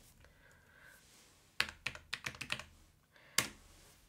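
A quick cluster of light clicks and taps about one and a half seconds in, then a single click near the end, against a quiet room.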